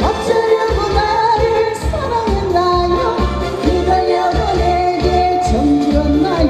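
A woman singing into a handheld microphone over an amplified backing track with a steady beat, holding a long note near the end.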